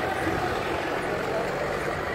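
A vehicle engine running steadily close by, a low hum under people talking in the background.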